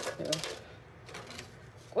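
Crisp, dried injera pieces crackling and rustling as they are handled and dropped onto a parchment-lined plate: a cluster of brittle clicks near the start, then only a few faint ones.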